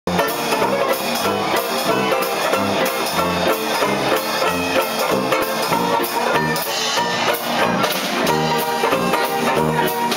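A live trad-jazz band playing: banjo strumming chords on the beat, with piano, drum kit and a tuba playing a steady bass line.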